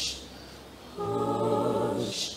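A cappella choir singing. A held chord ends on a hissed "sh" at the start, there is a short pause, then a new sustained chord of many voices enters about a second in.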